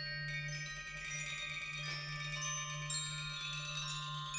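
Tuned metal percussion: many high, bell-like tones struck and left to ring, overlapping into a dense shimmering cluster that thickens about a second in, over a low steady hum.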